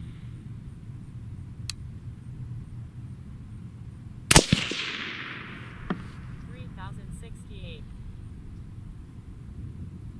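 A single shot from a suppressed AR-15 in .223 Wylde, about four seconds in: one sharp report followed by a ringing tail that dies away over about a second.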